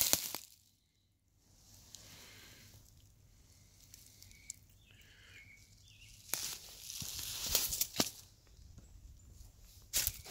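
Footsteps on dry leaves and twigs: soft rustling throughout, louder for about two seconds past the middle, with a few sharp snaps of twigs.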